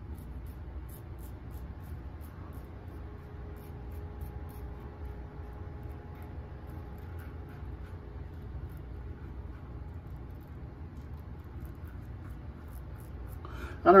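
Faint scratching of a Blackland Dart safety razor scraping through lather and stubble in short strokes, over a steady low hum.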